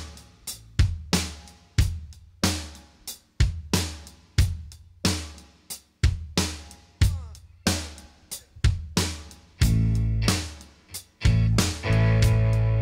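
Instrumental intro of a live band: drum kit keeping a steady beat of sharp hits, with an archtop electric guitar playing along. About ten seconds in the band comes in fuller and louder.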